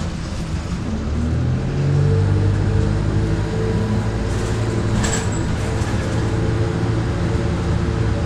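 Transbus Dart SLF single-deck bus heard from inside the passenger saloon, its diesel engine running under way with the engine note rising a second or two in as it pulls. A brief hiss about five seconds in.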